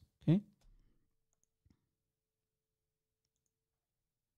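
Near silence after a man's brief "okay", broken by one faint click a little under two seconds in.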